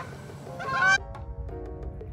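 Geese honking: two loud honks in the first second, the second the loudest. They stop at a cut about a second in, and faint background music follows.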